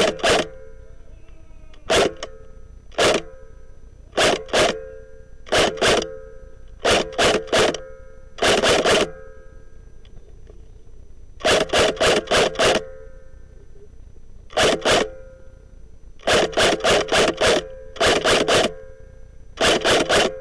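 Airsoft G36 rifle firing, picked up close from its own rifle-mounted scope: single shots and quick bursts of two to five, each a sharp crack followed by a brief ring.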